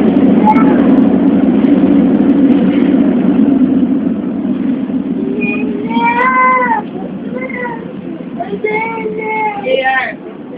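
ML90 metro car running, its steady low rumble fading over the first half. Then, from about halfway, a toddler's high-pitched whining cries, three in a row.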